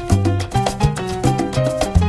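Salsa band recording in an instrumental passage without vocals: a bass line of low held notes under a dense rhythm of conga, timbale and other percussion strokes, with steady melodic notes above.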